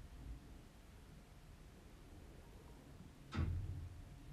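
Quiet room tone with a faint low hum, and one brief soft, muffled low sound about three seconds in.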